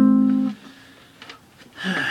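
Acoustic guitar chord, the E-shape voicing of the four chord, ringing out from a strum and then damped by the hand about half a second in.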